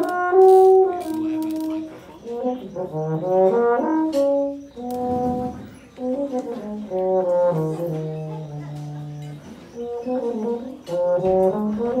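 Small brass ensemble of euphonium, tubas and French horn playing a mazurka, several parts sounding together in short phrases with brief breaks between them.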